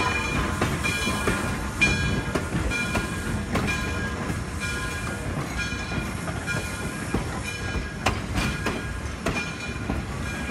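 Frisco 1630, a 2-8-0 steam locomotive, and its passenger cars rolling slowly past at close range as the train pulls into the station: a steady rumble of wheels and running gear, with a ringing tone that repeats about once a second. A few sharp knocks near the end.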